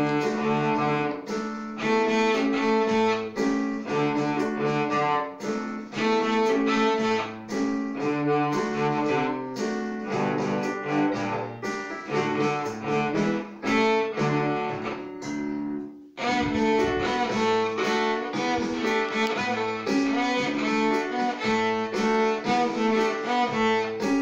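A young child's cello, bowed, playing a rag tune as a run of separate notes in a steady rhythm. The playing stops for a moment about two-thirds of the way through, then picks up again.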